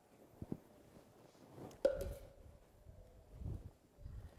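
Quiet handling noises as someone bends over and moves things: a small click, then a sharp knock with a short ring about two seconds in, and soft low thumps.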